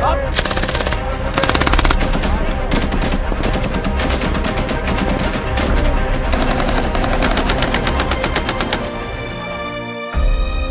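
Belt-fed machine guns firing sustained rapid automatic bursts over background music. The firing stops about a second before the end.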